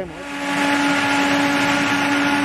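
Tractor-drawn air-blast mist sprayer running while spraying disinfectant: a loud, steady rush of the big fan with a steady hum under it. It swells over the first half second, then holds even.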